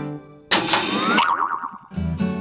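Background music fades out, then about half a second in a sudden hit sets off a cartoon 'boing' sound effect, a tone that glides up and then wobbles for under a second. It is a transition stinger between TV segments.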